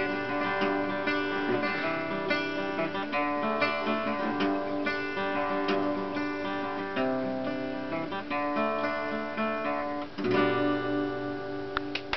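Acoustic guitar strummed in an instrumental passage without singing, its chords ringing on between strokes.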